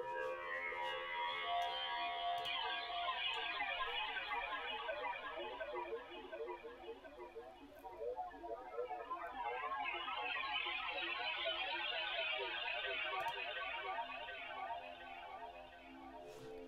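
Atmospheric OSCiLLOT modular-synth patch playing through Guitar Rig effects (transpose stretch and delays): a dense texture of many short overlapping notes that dips about six seconds in and swells again about ten seconds in.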